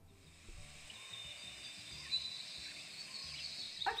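Faint outdoor countryside ambience with thin high chirps, like birds or insects, fading in from near quiet during the first second.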